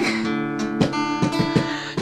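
Acoustic guitar strummed, a handful of strums with the chord ringing on between them.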